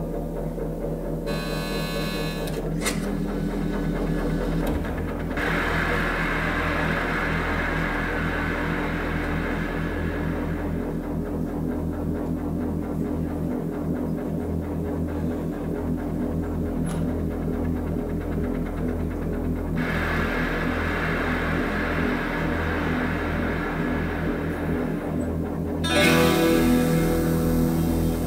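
Live band's synthesizer intro: a steady, throbbing low synth pulse under two long swells of hissing noise effects, with a louder chord coming in near the end.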